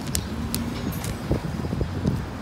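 Steady low rumble of road traffic, with a few brief crinkles of a plastic produce bag being handled.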